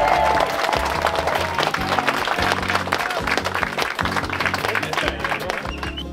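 Guests applauding over background music, the clapping fading toward the end.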